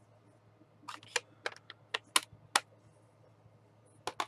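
Clicks and taps of a plastic ink pad case being handled and moved away: about six short, sharp clicks close together, starting about a second in.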